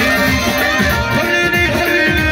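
Loud live amplified music: an electronic keyboard melody over a steady beat.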